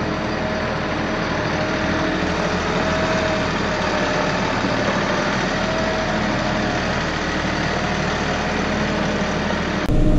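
Farm tractor engine running steadily at low speed as the tractor drives slowly past, with a faint steady whine over the engine note. Near the very end the sound jumps abruptly louder.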